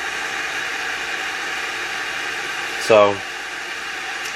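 Hamilton Beach 40898 electric kettle heating water short of the boil, giving a steady hiss.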